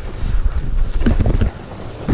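Wind buffeting a skier's camera microphone at speed, with skis scraping over mogul snow and a few sharp knocks about a second in; the rush drops briefly near the end.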